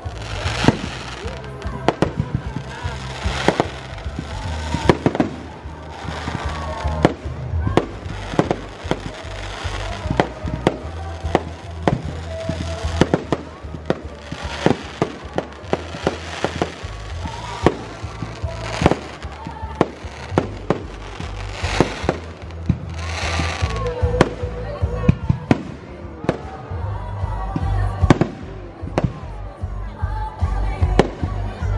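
Aerial fireworks shells bursting in a dense, irregular barrage of bangs and crackles.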